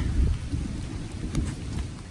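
Thunder rumbling low and dying away as a storm approaches.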